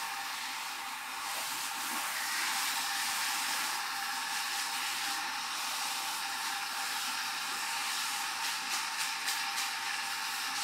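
Water running from a handheld shampoo-basin sprayer as a steady hiss, with a few short clicks and splashes near the end.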